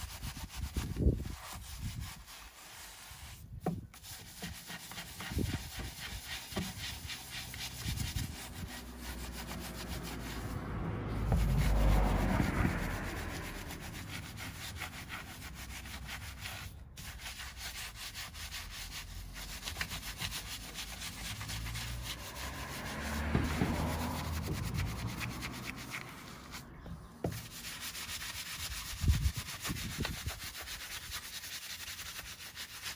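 Bristle wheel brush scrubbing a wet, cleaner-coated alloy wheel, in and out of the barrel and between the spokes: a continuous rubbing that swells louder twice. A couple of sharper knocks, one near the start and one near the end.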